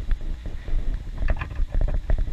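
Wind buffeting the camera microphone in a steady low rumble, with a few short sharp knocks in the middle and near the end.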